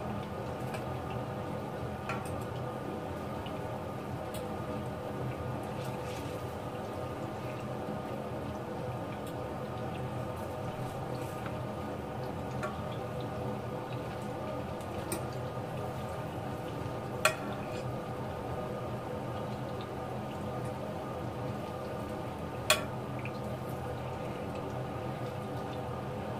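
Pork meatballs frying gently in butter and olive oil in a frying pan over medium heat: a steady low sizzle with a hum underneath. Two sharp clicks of a utensil against the pan come in the second half.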